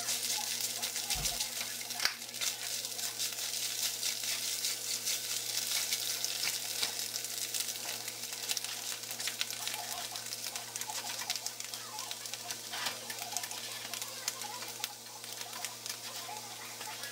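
Food sizzling with fine, steady crackling in a frying pan of scrambled eggs, with a spatula stirring the eggs during the first few seconds.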